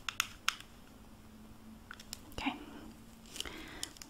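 Small screwdriver turning a screw into the plastic battery cover of a motorized toy mouse: a few light clicks in the first half second, then faint handling of the plastic toy near the end.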